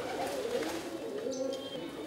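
Pigeons cooing in low, wavering calls, with a brief high bird chirp about one and a half seconds in.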